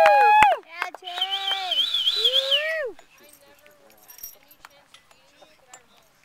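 Two high, drawn-out cheering yells from a spectator. The second ends about three seconds in, and only faint field sounds with scattered small clicks follow.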